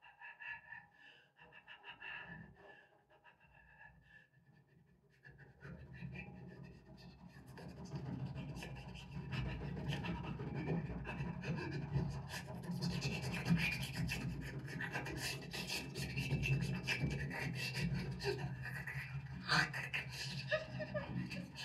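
Improvised noise music made with breath into a microphone and hands rubbing frame-drum skins. It starts quiet and breathy, then swells about five seconds in into a dense, rasping, rubbing texture, with fast scratchy crackle from about twelve seconds on.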